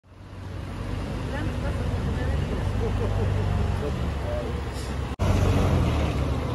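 Terminal tractor engine running with a steady low rumble under the hum of yard traffic, with faint voices in the background. The sound cuts out for an instant about five seconds in.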